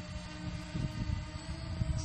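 Yuneec Breeze quadcopter's rotors humming steadily in flight, a set of even, unwavering tones, with an irregular low rumble underneath in the second half.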